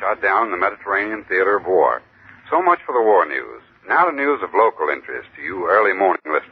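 Speech only: a voice talking in an old radio-drama recording, thin and with no high end.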